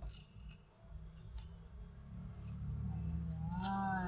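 Kitchen knife blade cutting and scraping the skin off a cassava root by hand: a few short, sharp scrapes spaced out over the seconds. A brief voiced hum is heard near the end.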